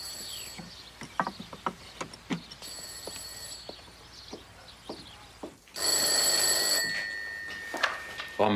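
Telephone ringing in rings about a second long, about three seconds apart: the tail of one ring at the start, then two more, the second louder. Light clicks and clinks come between the rings.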